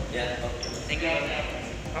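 Several people talking indistinctly, with a football thudding once as it is bounced, about a second in.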